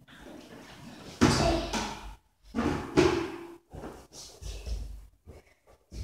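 Plastic bucket knocking and banging against a wooden floor: two loud bangs about two seconds apart, with smaller knocks after.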